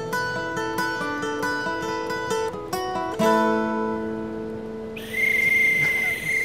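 Acoustic guitar picking a short closing run of single notes, ending on a chord about three seconds in that rings out. Near the end comes one long, steady blast on a whistle.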